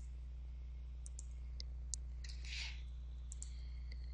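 Scattered computer mouse and keyboard clicks, about half a dozen short sharp ones, with a soft rustle about two and a half seconds in, over a steady low electrical hum.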